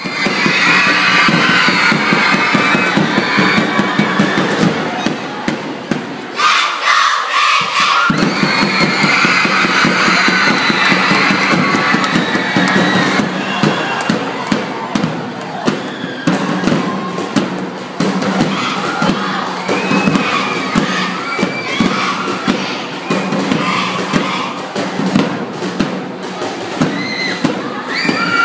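A large crowd of schoolchildren cheering and shouting in a gymnasium, loud and continuous, with frequent sharp thumps through it.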